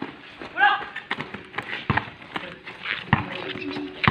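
Basketball bouncing on an outdoor concrete court as players run, heard as scattered sharp thuds. A short shouted call comes about half a second in.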